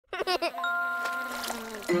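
Cartoon logo jingle: a child giggles, then a bright chime chord rings out and slowly fades, with a tone gliding downward near the end.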